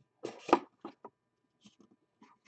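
Cardboard trading-card box lid being slid off the box: a brief loud scraping rustle, then a few light clicks and taps of cardboard.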